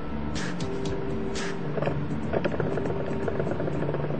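Music with steady held notes and light percussive ticks, no speech.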